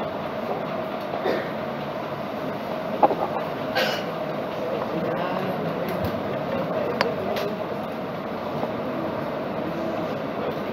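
Steady background noise of a lecture-room recording, with a few sharp clicks about three to four seconds in and again around seven seconds.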